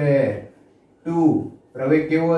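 A man speaking in two short phrases with brief pauses between: only speech.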